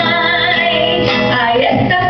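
A woman singing with long held notes, amplified through a handheld microphone, accompanied by an acoustic guitar.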